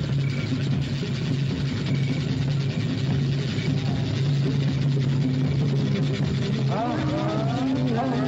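Film soundtrack: a steady low drone, with a voice wailing upward in pitch near the end.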